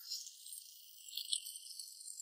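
Faint, high-pitched shimmering rattle of a film sound effect laid over a fireball blast, with a couple of small ticks about a second and a quarter in.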